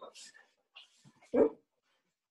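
A dog barks once, a short single bark about one and a half seconds in, over faint scattered room sounds.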